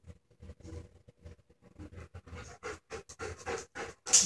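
A dog panting in short, quick breaths, louder toward the end.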